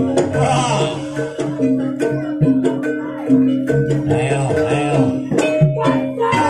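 Jaranan dance accompaniment music: a steady run of pitched percussion notes stepping up and down over sharp drum strikes, with some gliding higher melody lines.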